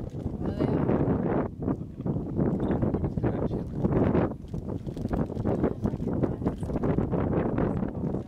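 Wind buffeting the microphone: a low, gusty rumble that rises and falls, with a few short knocks over it.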